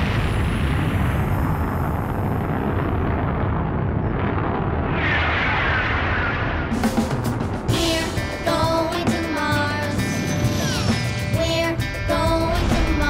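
Animated space shuttle launch sound effect: a loud, steady rocket-engine rumble from ignition, with a rushing whoosh about five seconds in. From about eight seconds in, music with a melody and a beat comes in over the rumble.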